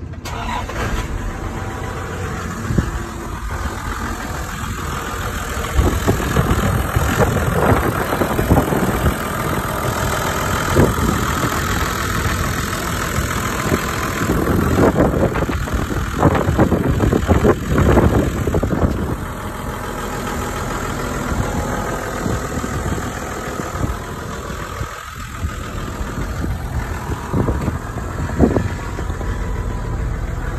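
Toyota LandCruiser engine running at idle, a steady low note with louder, uneven stretches now and then.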